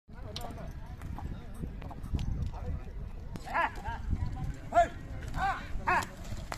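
Yoked pair of bullocks hauling a dragged load over dry dirt: a steady low scraping rumble with scattered hoof clicks. From about halfway, four short rising-and-falling shouts come from the drivers urging the bullocks on.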